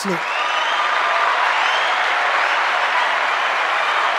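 Applause with some faint cheering, steady for about four seconds and cutting off near the end.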